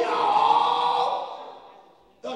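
A man's voice through a microphone singing a long, held phrase, fading out about a second and a half in.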